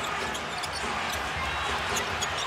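Basketball being dribbled on the hardwood court under the steady noise of an arena crowd.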